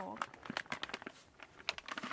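Plastic and paper packaging being crumpled in the hands: a quick run of crinkling crackles.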